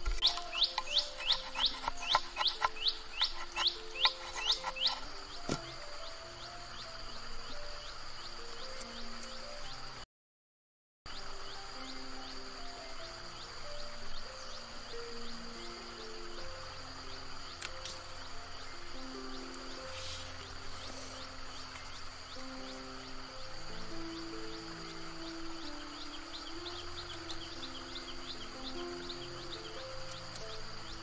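Background music with a steady high-pitched drone. For the first five seconds a large knife shaves along a thin stick in quick scraping strokes, about three or four a second. The sound drops out completely for about a second near the middle.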